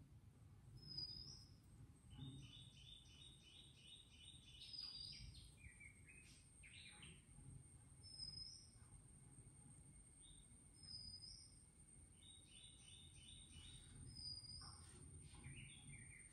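Near silence, with faint bird chirps: a short high call repeated every two to three seconds, and two quick runs of chirps, one a few seconds in and one near the end.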